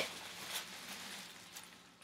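Quiet room tone: a faint hiss with one soft, brief sound about half a second in, falling away to dead silence near the end.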